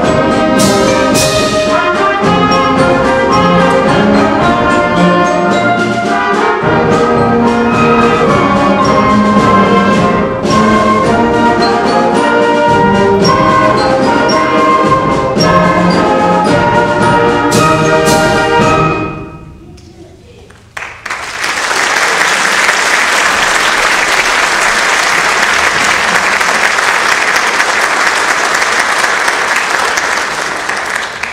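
Middle-school concert band of brass, woodwinds and percussion playing loudly to the end of a piece, the final chord cutting off a little under two-thirds of the way in. After a short pause, audience applause follows to the end.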